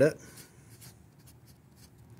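Felt-tip marker writing on paper: a faint run of short scratchy strokes.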